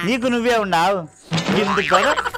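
Loud, agitated speech in a heated quarrel: raised voices with strongly swooping pitch, with a brief pause a little past the middle.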